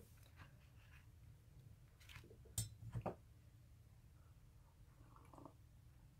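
Near silence with a few soft taps and rustles about two to three seconds in, from hands handling a paper craft card.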